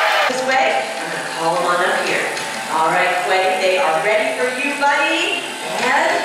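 A show presenter talking to the audience, amplified through a loudspeaker system.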